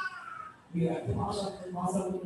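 A man preaching into a microphone in an amplified, sing-song delivery, with a brief high falling vocal tone at the start and a short pause about half a second in before his voice resumes.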